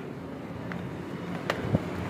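Steady outdoor background noise, a low even hiss and rumble, with a single sharp click about one and a half seconds in.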